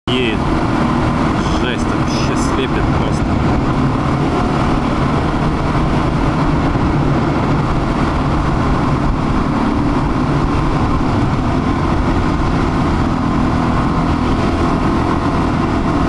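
Suzuki DR-Z400's single-cylinder four-stroke engine running steadily at road speed with wind and tyre noise, heard from the bike in a road tunnel.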